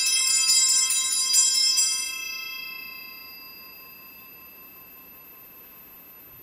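A set of altar bells shaken rapidly at the elevation of the consecrated host, marking the consecration. The shaking stops about two seconds in and the ringing dies away over the next second or so.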